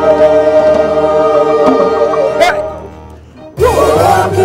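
Choir singing in harmony: a long held chord, with one voice sliding upward as it ends, a short break about three seconds in, then the next phrase begins.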